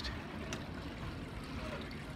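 Steady low outdoor background noise, an even hiss with no clear pitch, and a faint click about half a second in.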